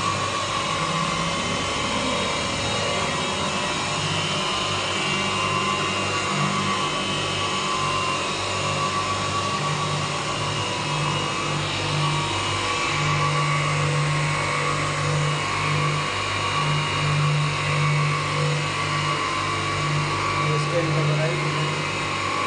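Three-motor semiautomatic glass beveling machine running: its motors drive diamond wheels that grind a straight glass edge under a flow of coolant water. The result is a steady machine hum and whine, with a low hum that keeps cutting in and out.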